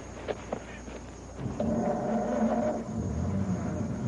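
A horse gives a low, drawn-out call lasting about a second and a half, starting about a second and a half in. A few faint clicks come before it.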